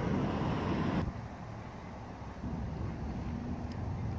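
Outdoor street ambience: a steady rush of road traffic and wind noise that drops abruptly about a second in to a quieter low rumble.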